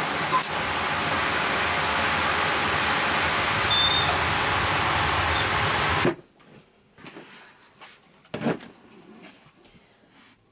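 Wood-fired boiler running with a steady rushing noise, a sharp latch click about half a second in as its firebox door is opened. About six seconds in it gives way to faint rustling of laundry being sorted by hand, with one short knock.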